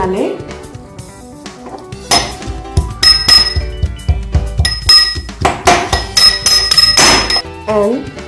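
Metal spoon pounding garlic cloves and ginger in a small steel cup to crush them to a paste: a run of irregular metallic knocks with a ringing tone, starting about two seconds in and stopping shortly before the end.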